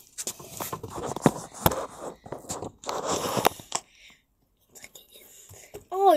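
Close rustling and scraping right on the microphone, in uneven bursts, with two sharp clicks about a second and a half in, then a brief near-silent pause.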